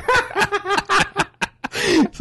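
Two men laughing hard in quick, short bursts that die away about a second and a half in, followed by a breath.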